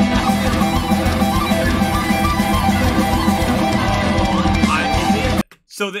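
Live metal band music, electric guitar to the fore over bass and drums, playing loud and dense, then cutting off suddenly about five and a half seconds in.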